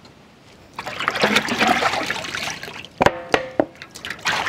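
Water pouring and splashing over raw buffalo leg bones as they are washed in a metal basin. About three seconds in comes a metal clank with a brief ring.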